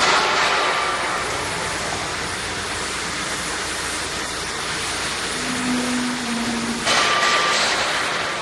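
Automatic cup filling and sealing machine running, a steady clattering mechanical noise, with a sudden loud hiss at the start and another near the end.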